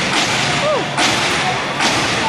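A step team stomping and slapping in unison, with two sharp hits about a second in and near the end, over a yelling crowd.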